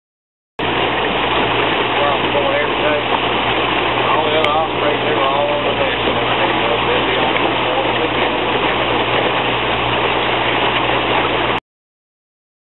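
Boat outboard motor running steadily under way, with a loud rush of wind and water over it. Faint voices come through between about two and five seconds in. The sound cuts in and out abruptly.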